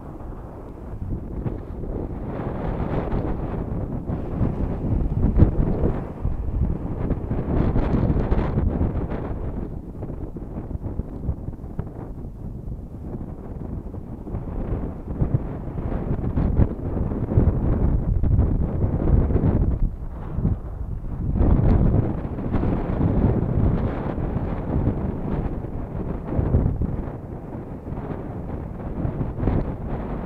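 Wind buffeting the microphone in gusts, a low rumble that swells and drops every few seconds, over ocean surf breaking on the beach.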